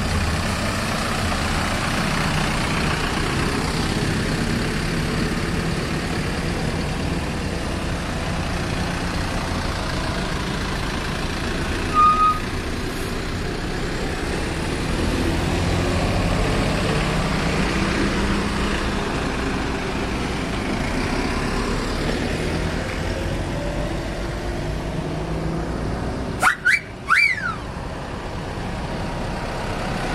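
City buses pulling away and passing at low speed, their diesel engines running with a shifting rumble. A brief loud high tone sounds about twelve seconds in, and a few sharp loud blasts with gliding pitch come near the end.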